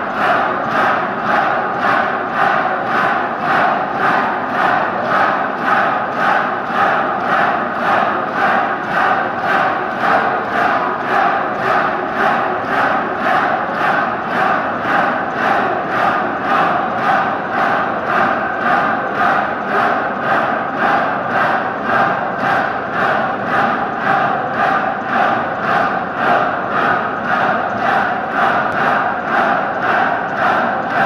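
A group of voices chanting dhikr in unison, part of a Turkish devotional hymn (ilahi), repeating the phrase in a steady, even rhythm without a break.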